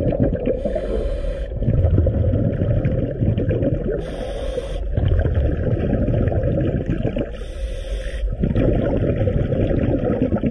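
Scuba diver breathing through a regulator underwater: a short hiss on each inhale, three times, about every three seconds, with the low rumbling gurgle of exhaled bubbles between.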